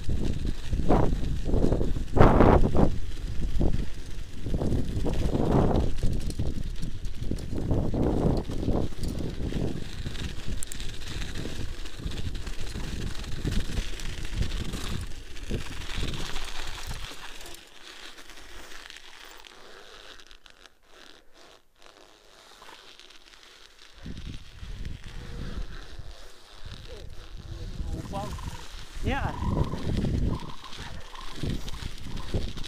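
Wind buffeting the microphone of a bicycle-mounted camera while the bike is ridden over snow, with the tyres crunching on it. The noise is loud and uneven, drops to a quieter stretch for several seconds past the middle, then picks up again.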